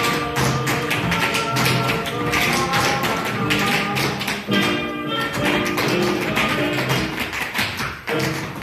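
Latin-style dance music with a rapid, dense run of sharp taps throughout.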